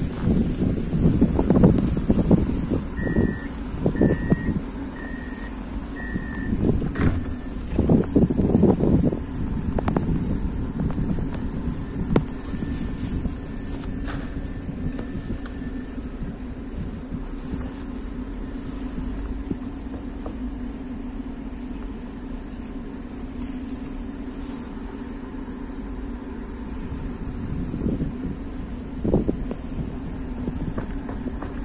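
Steady low hum of a standing 71-414 Pesa Fokstrot tram, with gusty wind buffeting the microphone during the first ten seconds and again near the end. Four short electronic beeps sound about a second apart early on.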